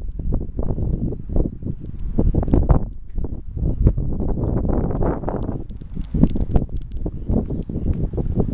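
Wind buffeting and handling noise on a handheld camera's microphone: an uneven low rumble with irregular knocks and rustles.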